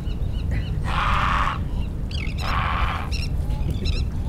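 Baitcasting reel being cranked in short spells, its whir coming in bursts of under a second. Faint high bird calls are heard between the bursts.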